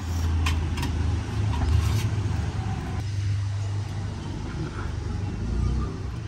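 Low, steady rumble of a motor vehicle's engine running nearby, with a few light clicks.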